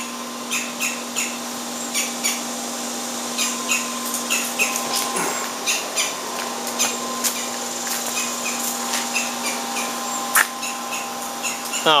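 A bird giving short, sharp scolding calls again and again, a few a second, in an irregular series: alarm calls aimed at a cat, from what the speaker takes for a jay or something like it. A steady low hum runs underneath, and there is a single sharp click about ten seconds in.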